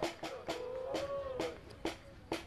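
Spectators clapping in a steady rhythm, about two claps a second, while a voice holds a long wavering call over them.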